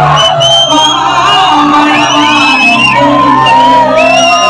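Live stage band playing a Malayalam song, with a lead singer's voice over sustained bass and keyboard, loud and steady.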